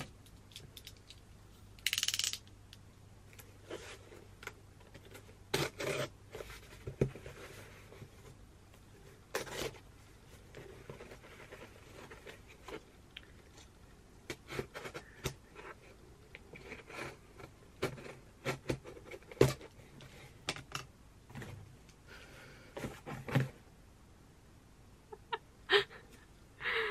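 Box cutter slicing through packing tape and cardboard on a parcel box, with scattered scrapes, clicks and short tearing sounds as the box is cut open and its flaps and packaging handled.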